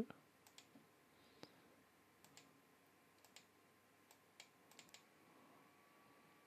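Near silence with about a dozen faint, short clicks scattered through, typical of a computer mouse being clicked.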